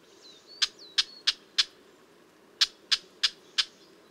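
Red-backed shrike giving its rough 'chilp' calls: two series of four short, harsh calls, about three a second, with a pause of about a second between the series. It uses this call both as an alarm and to mark its territory.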